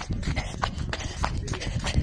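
Handling noise of a phone held against the microphone: irregular knocks and clicks over a low rumble as it is jostled.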